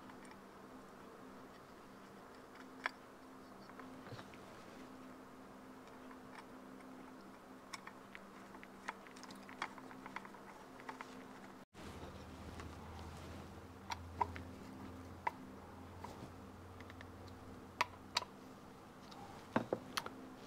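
Scattered small clicks and ticks of screws and a screwdriver being worked into the back of a tachometer's chrome metal housing, over a low steady hum.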